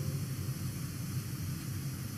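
Steady low hum with faint hiss: the background noise of the voice-over recording, with no distinct sound events.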